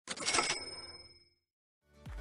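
A short metallic sound effect: a sudden rattling clatter with several high bell-like tones ringing out of it, dying away within about a second.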